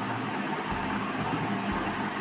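Steady room noise: an even, continuous hiss with a few faint low thuds.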